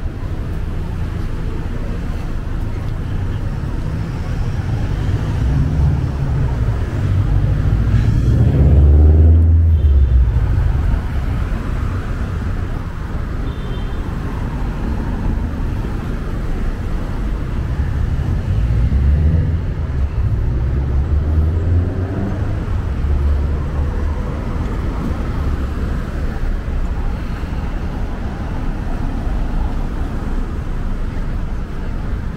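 Road traffic at a city intersection: cars driving past over a steady low rumble, with the loudest passes about nine seconds in and again around twenty seconds.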